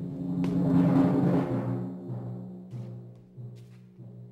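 Instrumental music from a live chamber opera ensemble. It swells to a loud peak about a second in, then dies away over held low notes.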